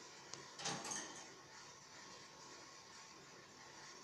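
Two faint short knocks or rustles about half a second and one second in, then quiet room tone.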